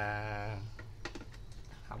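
A voice holds a drawn-out syllable for about half a second. After that come a few light, scattered clicks and taps as a power-supply cable connector is handled and pushed onto a motherboard.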